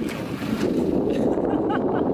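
Steady wind noise on an outdoor microphone, with faint talk underneath.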